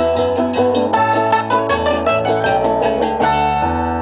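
A live Antillean tipiko band playing an instrumental passage: plucked strings picking quick notes over a moving bass line.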